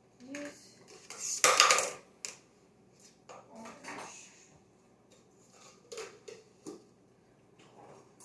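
Cups and dishes being handled in a kitchen: scattered clinks and knocks, with one loud rattling clatter lasting about half a second, a little under two seconds in.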